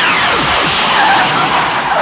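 Film sound of a DeLorean car skidding across wet pavement, its tyres squealing in a screech that falls in pitch.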